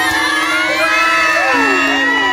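Several people, women and children, cheering and shrieking excitedly at once in delighted surprise, their voices rising and falling over one another.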